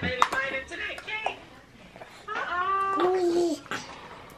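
A short knock just at the start, then a high-pitched voice, a single drawn-out vocal sound held for about a second near the middle.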